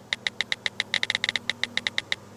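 Smartphone on-screen keyboard clicks as a text message is typed: a quick, irregular run of about fifteen short, sharp ticks.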